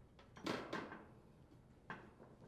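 Sheet-metal access cover of an air conditioner condensing unit being fitted back into place: a short clatter about half a second in, then a single sharp click near the end.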